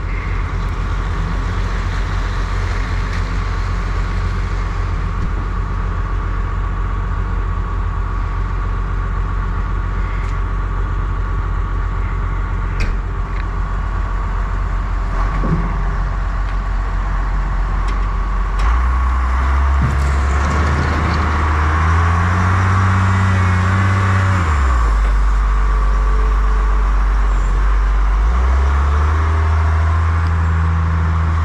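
Diesel engine of a John Deere 544J wheel loader running close by with a steady low hum. About two-thirds of the way through it revs up under load as the loader digs into the sand pile and lifts a full bucket, drops back briefly, then revs again near the end.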